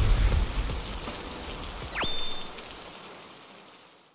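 Rain falling on water, a steady hiss that fades out gradually to silence. About two seconds in, a brief gliding electronic tone sounds over it.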